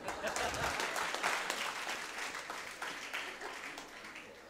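Applause: many hands clapping together, gradually dying away over the few seconds.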